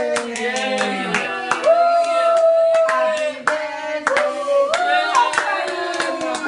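Several people singing a birthday song together, clapping hands in time at about three claps a second.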